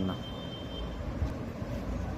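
A steady low background rumble with no distinct events, like distant traffic or machinery, with a faint thin high tone running under it.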